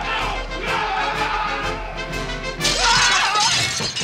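Brass-led orchestral film score. About two and a half seconds in, a sudden loud crash with shattering breaks in, followed by men yelling over the music.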